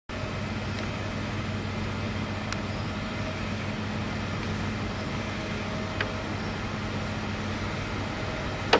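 A steady low mechanical hum over constant background noise, with a couple of faint ticks.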